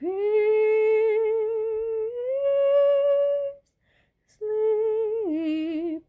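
A woman's solo voice singing a Christmas hymn unaccompanied. She holds a long note with vibrato, then moves to a higher one. After a short breath about halfway through, she holds another note that drops lower near the end.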